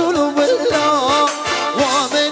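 Live band playing Middle Eastern dance music: an ornamented lead melody with wavering pitch over keyboard and a steady drum beat.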